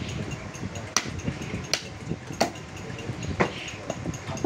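A heavy butcher's knife chopping through beef onto a wooden stump chopping block: four sharp knocks at uneven intervals over low background noise.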